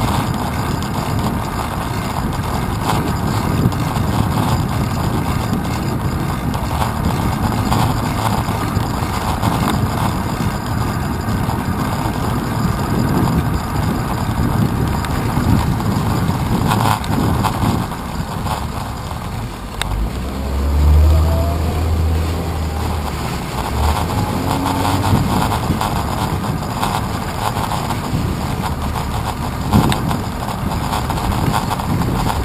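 Steady wind and road noise on a handlebar-mounted action camera's microphone during a bicycle ride through city traffic. A deep vehicle engine rumble swells for a few seconds about two-thirds of the way in, as the bicycle comes up behind a school bus.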